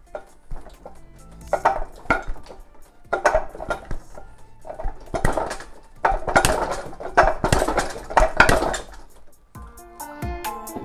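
Forearms, palms and fists knocking against the wooden arms and trunk of a Wing Chun wooden dummy (mook jong). The knocks come as a run of quick clattering flurries as tan sao and jam sao blocks turn into punches.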